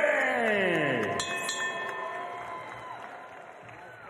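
Ring announcer's drawn-out call of a fighter's name over the arena PA, the last syllable sliding down in pitch for about a second, then echoing away and fading over the next two seconds, with faint crowd noise beneath.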